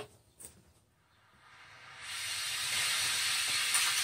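Steady hiss of a gas cutting/heating torch burning, fading in about a second and a half in after near silence and then holding even.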